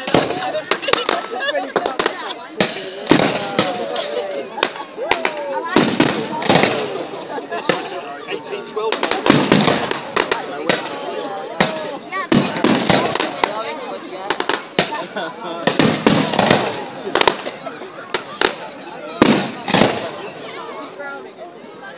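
Aerial fireworks bursting overhead: a continuous run of sharp bangs and crackles, bunched into denser volleys every few seconds.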